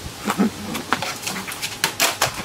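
A portable TV's plastic casing and parts being stamped on and smashed against a concrete step: several sharp cracks and clatters a fraction of a second apart.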